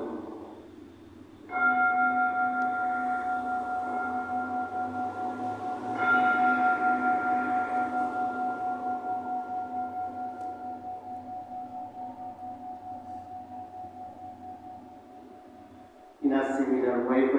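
A bowl-shaped altar bell is struck twice, about a second and a half in and again about four and a half seconds later. Each strike rings on in a few steady pitches, pulsing as it slowly fades. It marks the elevation of the consecrated host at Mass.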